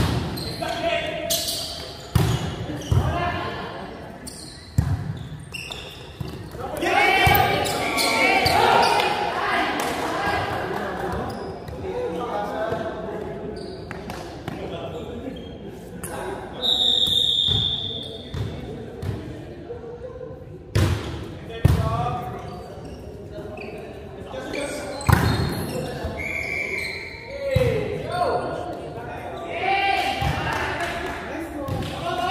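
Volleyball play in a large gym hall: a volleyball struck again and again in rallies, sharp slaps and thuds every few seconds, mixed with players' shouts and calls.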